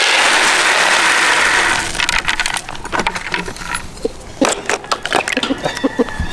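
Dry feed pellets poured into a plastic feed pan: a dense rushing rattle for about two seconds, then scattered clicks and knocks as the pellets settle and the pan is handled.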